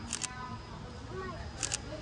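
A camera shutter firing twice, once right at the start and again about a second and a half later, each time a quick double click.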